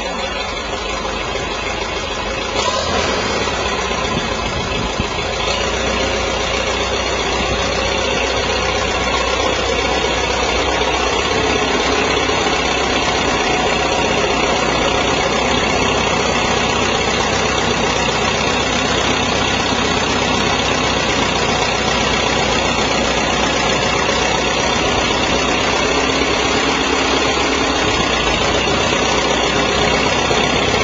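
A 1958 Farmall 350 Diesel's Continental four-cylinder direct-start diesel engine running just after starting. It grows louder over the first several seconds as the tractor pulls ahead, then runs steadily.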